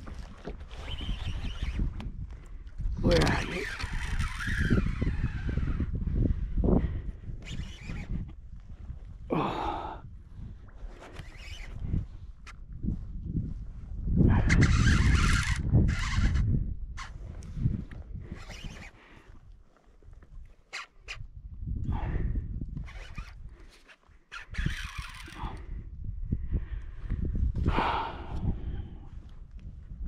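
Handling noise in a plastic kayak while a heavy hooked fish is played on rod and reel: irregular knocks, rustles and rumbles, with a louder rush of noise about halfway through and a few wordless grunts of effort.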